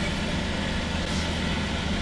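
Car engine idling with a steady low hum, heard from inside the cabin.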